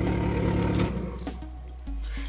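Volkswagen car engine idling steadily, its hum dropping away about a second in, followed by faint low musical notes.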